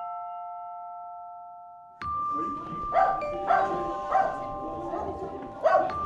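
A radio jingle. A held bell-like chime chord fades away over about two seconds, then a second chime sequence of sustained bell tones starts, broken by four or five short sharp sounds.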